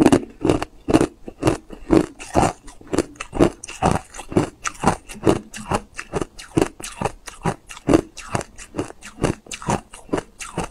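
Hard clear ice being chewed and crunched in the mouth, a steady run of crisp crunches at about three a second.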